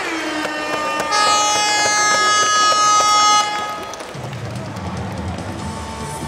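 Music over an arena's public-address system: a loud held chord comes in about a second in and stops suddenly a little over two seconds later, leaving quieter, lower sound.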